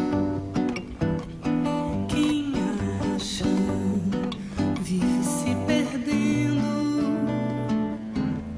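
Acoustic guitars playing the instrumental introduction of a samba, plucked and strummed, with light percussion under them.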